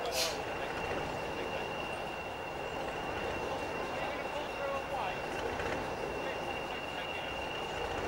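Small diesel shunting locomotive's engine idling steadily while standing still, with a brief hiss about a quarter of a second in.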